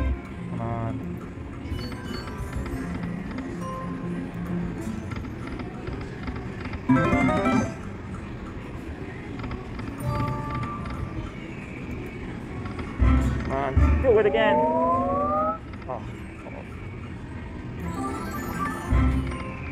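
Buffalo Gold video slot machine playing its electronic music and reel sounds through losing spins, over a background of other casino machines and voices. A loud electronic burst comes about seven seconds in. Another comes late on, with rising electronic tones.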